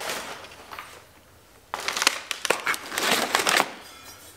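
White packing paper crinkling and crumpling as a part is unwrapped and lifted out of a cardboard box. It trails off in the first second, pauses briefly, then comes back denser for about two seconds.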